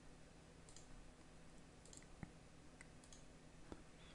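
Near silence with a few faint computer mouse clicks, the clearest a little past the middle, as holes are picked one by one in the CAD program.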